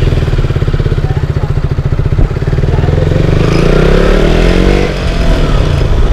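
KTM Duke 200's single-cylinder engine running at low speed with a steady pulsing note, then revving up as the bike accelerates from a little after two seconds in, its pitch rising. The note dips briefly near the end and then picks up again.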